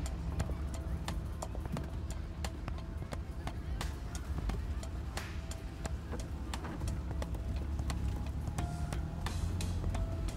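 Land Rover Discovery 1 driving slowly along a rutted dirt track, heard from inside the cab: a steady low engine and road rumble with frequent short knocks and rattles as it goes over the ruts. Music plays throughout.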